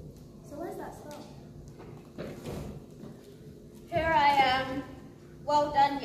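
Voices speaking, with a louder high-pitched exclamation about four seconds in and another short one near the end.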